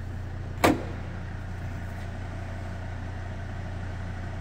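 A single sharp knock a little over half a second in, from the lower half of a Volvo XC90's split tailgate being worked, over a steady low hum.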